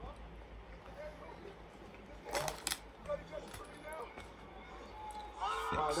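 A brief cluster of metallic clinks about two and a half seconds in, from the metal plates of a replica WWE championship belt as it is handled and turned around, over faint background voices. A man's drawn-out exclamation starts near the end.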